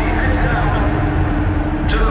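Indistinct voices over a steady low rumble, with a held low tone and a few sharp clicks.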